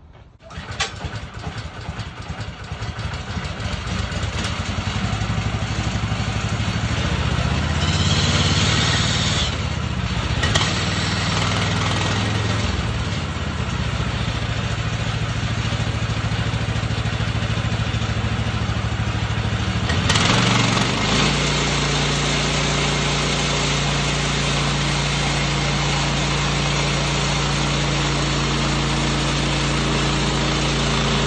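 Gasoline engine of a Woodland Mills HM126 portable band sawmill starting up about half a second in and running. About twenty seconds in its note changes and settles into a steady, even run.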